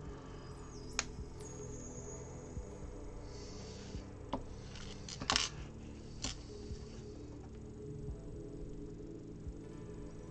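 Low background music runs under a few sharp plastic clicks of Lego pieces being handled and snapped together, the loudest about five seconds in.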